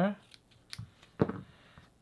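Scissors snipping through cotton wick: a few short, sharp cuts, the loudest a little past the middle.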